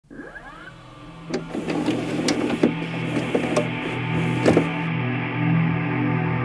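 Intro of a music track: a low steady drone with several held pitches swells over a few seconds. It opens with brief sweeping pitch glides and is dotted with scattered clicks and ticks.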